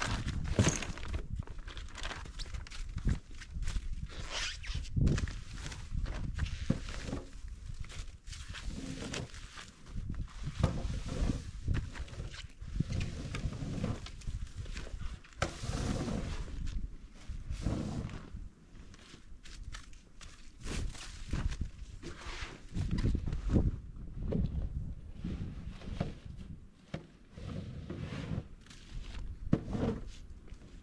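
Plastic snow shovels scraping heavy, wet snow off a concrete slab and tipping it into a plastic jet sled: irregular scrapes and dull thuds of snow landing, with footsteps.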